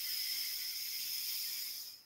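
A person taking a long, deep in-breath close to the microphone, a steady airy hiss that stops near the end as the breath is held at the top of the inhale.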